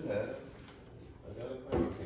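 Handling of a wooden TV-stand cabinet: a single sharp knock near the end, with brief murmured speech before it.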